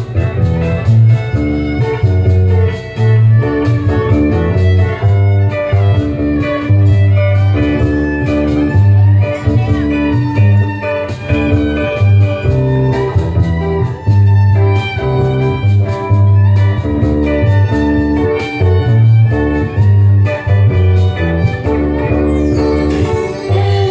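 Live acoustic band playing an instrumental passage: a plucked-string melody over a steady cajon rhythm, with violin.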